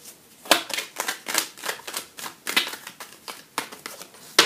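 A tarot deck being shuffled by hand, the cards slapping against each other in quick, irregular clicks, the sharpest about half a second in.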